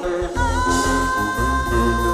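Live konpa band playing: a deep bass line and keyboard chords under a long high note held from about half a second in.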